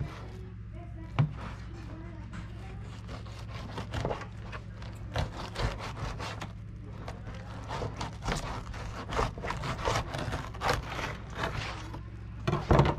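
Fillet knife scraping and slicing along a triggerfish fillet, separating it from its tough skin against a cutting board: a run of short, irregular rasping strokes. A steady low hum runs underneath.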